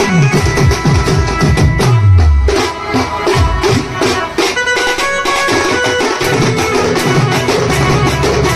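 Koraputia kemta baja band-party music: a group of stick-beaten drums playing a fast, dense rhythm with a melody line over it. In the first couple of seconds low notes slide downward in pitch.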